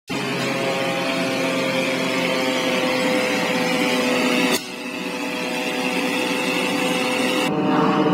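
SteamRay rotary engine running steadily while driving a generator, a continuous machine whine of several held tones over a noise haze. The sound breaks off briefly about halfway through and changes in tone near the end.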